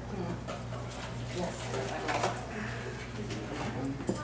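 Indistinct murmur of people talking quietly in a room, with scattered short sounds and light clicks, over a steady low hum.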